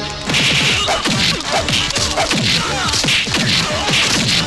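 Film fight-scene sound effects: a rapid string of swishing blows and punch impacts, each swish falling in pitch, bursting in suddenly a moment in and running on several times a second.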